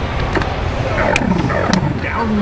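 Loud arcade din: a steady rumble and hiss of game machines and crowd noise, with three sharp clicks spread across it.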